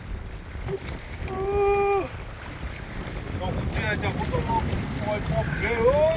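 Wind rumbling on the microphone outdoors. A person's voice calls out once, holding one steady note for about half a second, about a second and a half in.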